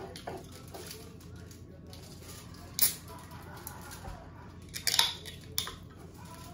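Low room tone with a few short, sharp taps and clicks, about three seconds in and twice near the end, from tableware and food being handled at a meal.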